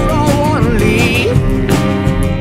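Instrumental break of a folk-rock song: acoustic guitar strumming under a lead melody line with vibrato in the first second and a half.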